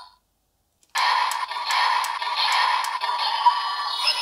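The DX Venomix Shooter toy's built-in speaker plays its Shake Finisher electronic sound effects and music. The sound starts suddenly about a second in, after a brief silence, and sharp clicks run through it.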